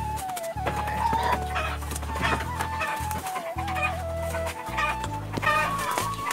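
Chickens clucking in short, separate calls over background music that carries a held, slowly stepping melody line and a steady low drone.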